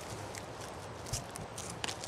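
Quiet outdoor night ambience, a steady low hiss with faint rustles and a few small clicks, loudest near the end.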